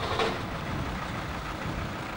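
A vehicle engine running steadily, a low rumble under an even hiss of street noise.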